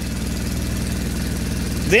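Mercedes-Benz Vario 814D's four-cylinder diesel engine idling steadily, heard from the driver's cab.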